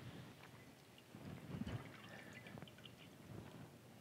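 Near silence with faint handling noises: a few small clicks and rustles as a cheesecloth spice bag is picked up from a metal bowl, mostly between about one and two seconds in.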